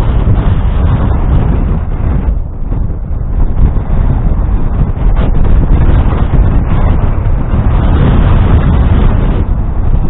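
Loud wind rumble on the microphone of an airborne camera, swelling and dipping in gusts.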